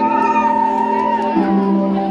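Live pop band music heard from the crowd: sustained keyboard chords with a long high note that slides up, holds and falls away. The chord changes about a second and a half in.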